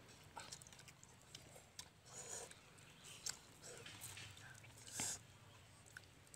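Cup noodles being slurped and chewed, with small clicks of forks against the cups; the loudest slurp comes about five seconds in.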